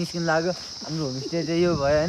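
A young man talking, with a steady, high-pitched drone of insects underneath his voice.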